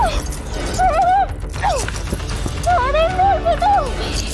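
A woman's muffled, wavering cries, three of them, stifled by a hand clamped over her mouth.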